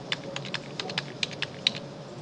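Computer keyboard typing: quick, uneven key clicks, several a second, as numbers and commas are entered.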